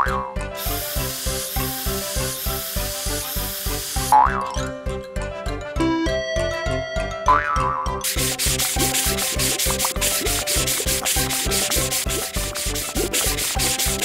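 Cartoon car-wash sound effects over children's background music with a steady beat. A spray bottle hisses out soap for about three and a half seconds, with springy boings around it. From about eight seconds in, a sponge scrubs in a fast, rhythmic rubbing.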